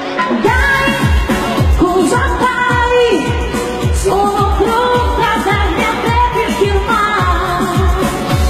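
A woman singing a Neapolitan neomelodic song live into a microphone, backed by a band with keyboards and a steady electronic drum beat.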